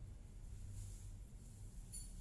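Steady low hum with faint rustles and a small click as hands work a crochet hook through thread.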